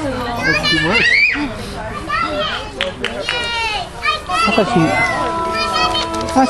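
Children's high-pitched voices calling and shouting at play, mixed with adults talking.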